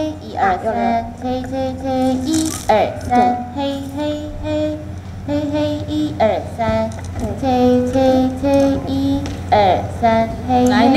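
A solo melody of held notes joined by swooping pitch slides, played one performer at a time through the stage sound system during a sound check.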